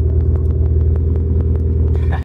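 Volvo 740's red-block four-cylinder engine idling steadily through its new 2.5-inch side-pipe exhaust with cherry bomb muffler and resonator: a low, even, pulsing rumble heard from inside the car.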